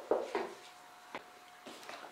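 A few short knocks and scrapes of a metal saucepan and wooden spoon against a glass baking dish as thick semolina halva is poured out, with a quieter stretch in the middle.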